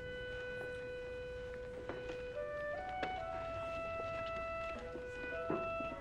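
Quiet orchestral film score: a slow melody of long held notes that step gently from pitch to pitch.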